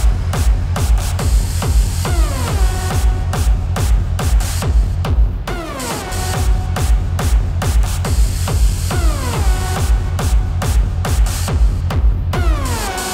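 Electronic dance music from a DJ set: a driving kick drum and heavy bass, with a falling synth sweep that repeats about every three seconds.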